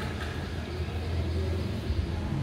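Steady low background rumble with a faint hiss, and a single short click near the end.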